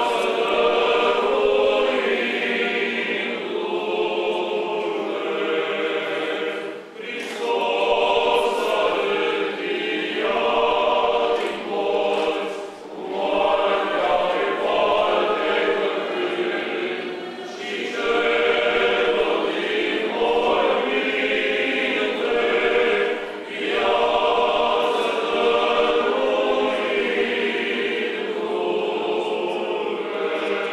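Choir singing Orthodox church chant unaccompanied, in long sung phrases a few seconds each with short breaks between.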